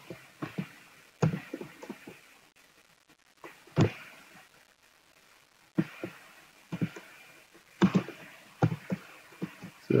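Computer keyboard keystrokes and mouse clicks: scattered sharp taps, some single and some in short clusters, with pauses of a second or two between them.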